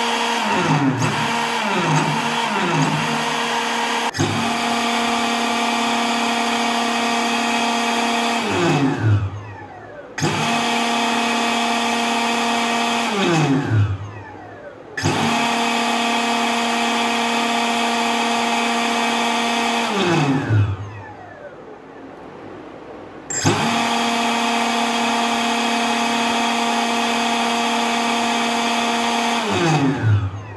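3D-printed jet engine, a fan spun by a brushless drone motor, giving a few short throttle blips and then four long runs at a steady, loud whine. After each run the pitch falls as the fan winds down once the throttle is cut.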